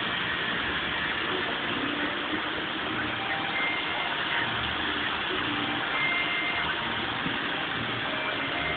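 Steady rushing of water pouring down a large cascading water wall, with a car engine running low underneath.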